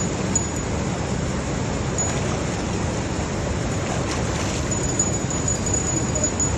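Steady rush of water from a dam outlet pipe pouring into the river.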